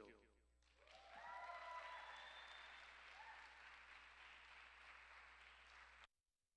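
Audience applauding after a winner is announced, with a few cheers over the clapping. It swells about a second in, holds fairly faint, and cuts off suddenly at the end.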